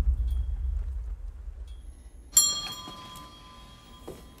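A low rumble fades away, then a small shop door bell rings once about two and a half seconds in, a bright metallic ring with several pitches that dies away.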